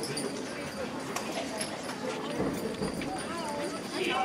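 Low murmur of an audience chatting in a large hall, with scattered sharp clicks and knocks through it.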